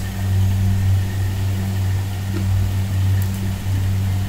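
A motor running with a steady low hum, unchanging throughout.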